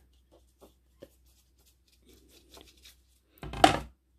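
Faint, soft strokes of a water brush pen on wet mixed-media cardstock, with a few light ticks. A short, louder noise comes about three and a half seconds in.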